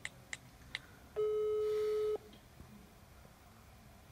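Three quick taps on a mobile phone's screen, then, about a second in, one ringback tone of about a second as an outgoing phone call rings.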